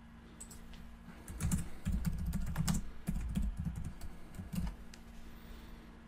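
A short burst of typing on a computer keyboard: irregular keystrokes clicking from about a second and a half in, stopping about a second before the end.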